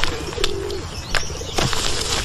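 Pigeons cooing in low, wavering calls, broken by a few short, sharp slaps or knocks.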